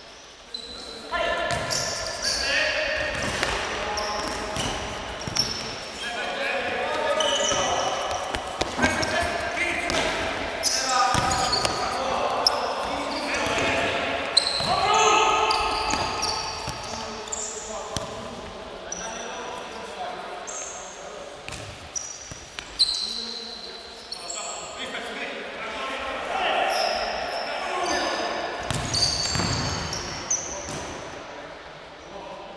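Indoor futsal match in a large sports hall: players' indistinct shouts and calls to each other, with the ball thudding as it is kicked and bounced on the hard floor, all echoing in the hall.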